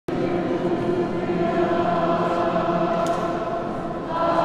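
A group of voices singing together in long held notes, the sound carried and blurred by the echo of a stone church.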